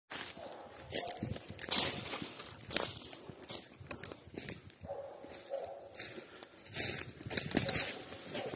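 Footsteps and brush rustling from someone moving quickly through forest undergrowth, in irregular steps and swishes. A faint pitched call sounds briefly near the start and again for about a second midway.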